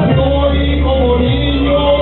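A man singing a ranchera into a handheld microphone over amplified backing music, holding one long note for about a second.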